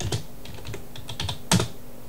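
A few irregular sharp clicks like buttons or keys being pressed, the loudest about one and a half seconds in, over a faint steady electrical hum.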